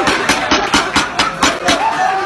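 A group of diners clapping, a quick uneven run of hand claps over crowd chatter.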